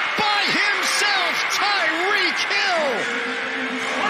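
Stadium crowd din with loud, excited voices over it, the crowd reacting to a touchdown catch.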